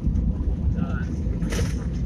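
Airliner cabin noise as the aircraft rolls on the ground after landing: a steady low rumble. A short sharp sound comes about one and a half seconds in.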